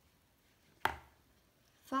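A thick board book's cover flopping open onto a wooden tabletop: one sharp thump a little under a second in.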